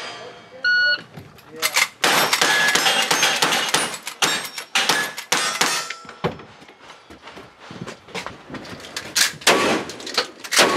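Shot-timer start beep just under a second in, then a rapid string of lever-action rifle shots, about two a second, with steel targets ringing. After some quieter handling clicks, a louder shotgun shot comes near the end.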